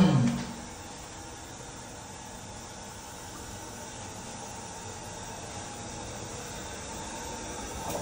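Steady faint hiss of water running in a toilet, growing slightly louder toward the end.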